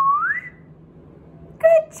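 A person whistling with pursed lips: one clear note that holds low, then slides up and stops about half a second in. It is the agreed signal to pop up in a jack-in-the-box listening game.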